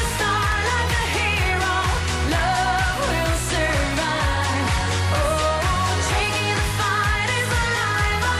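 A woman singing a pop song into a handheld microphone over a pop backing track with a steady beat.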